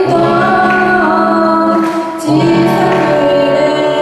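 A live amateur rock band: a female vocalist singing into a microphone over electric guitar, electric bass and a drum kit, with a brief drop in the backing about halfway through.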